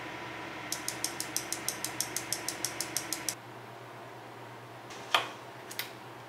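Chainsaw carburettor solenoid valve (Husqvarna 550XP) clicking rapidly, about six clicks a second over a faint hum for about three seconds, as it is cycled by a diagnostic fuel-valve test. About five seconds in comes one sharp, louder click, then two light clicks.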